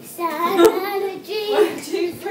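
A young girl singing, with held, wavering notes, and a single sharp click about two-thirds of a second in.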